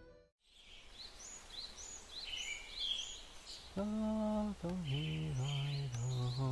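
Birds chirping outdoors, short rising high chirps repeated about twice a second. About four seconds in, a low held tone sets in and steps down in pitch a couple of times.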